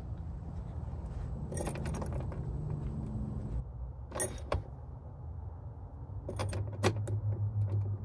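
Key ring jangling and the key clicking in the ignition switch as a truck's ignition key is turned, with several sharp clicks spread through. A steady low hum comes in about three-quarters of the way through.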